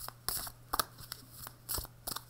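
A deck of oracle cards being shuffled by hand: about four short, crisp snaps and swishes of card stock.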